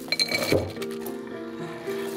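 A wooden cutting board knocks against a glass mixing bowl several times in the first half second, and one clink rings briefly, as shredded cabbage is scraped off the board into the bowl. Background music plays underneath.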